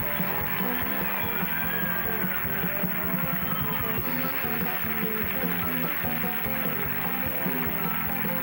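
A studio audience applauding, clapping steadily over an upbeat instrumental show theme with a repeating bass line.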